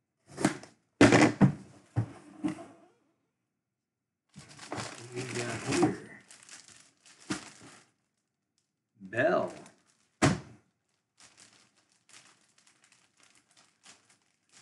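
Clear plastic jersey bag crinkling and rustling as a bagged football jersey is pulled out of its cardboard box and handled, in several bursts, loudest about a second in, fading to faint crackles near the end.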